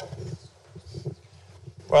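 Muffled, irregular low rumbles and faint murmurs of handling noise on a handheld microphone between speakers. A man's voice starts loudly right at the end.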